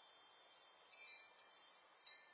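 Near silence: faint outdoor hiss, with a few brief, high ringing tones about a second in.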